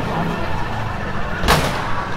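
A single loud, sharp bang about one and a half seconds in, over steady street noise.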